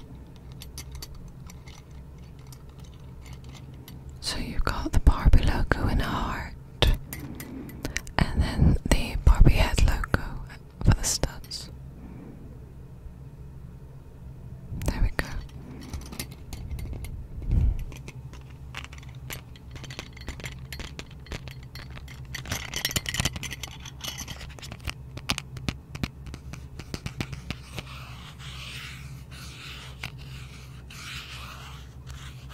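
Fingers handling, scratching and tapping a cardboard earring card with dangling rhinestone heart earrings close to a microphone: irregular bursts of rustling with sharp clicks and faint clinks, several times over.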